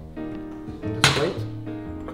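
Background music with held notes. About a second in, a short scrape: a chef's knife pushing minced garlic across a wooden cutting board.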